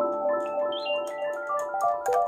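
Yamaha Reface CS synthesizer played live: a quick run of short notes climbing in pitch over a held note.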